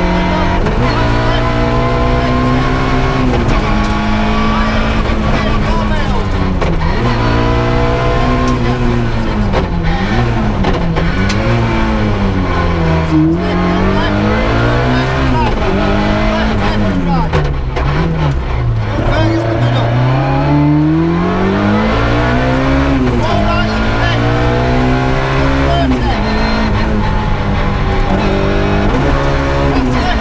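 Ford Puma 1.6 rally car's four-cylinder engine heard from inside the cabin under hard driving, its revs climbing and dropping sharply over and over through gear changes and lifts for bends, with quicker up-and-down swings through the middle of the stretch.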